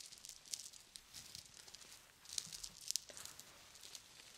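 Fingertips and nails rubbing and scratching over a lace dress and its band of rhinestone gems, making soft, scratchy rustles in short clusters, the strongest between two and three seconds in.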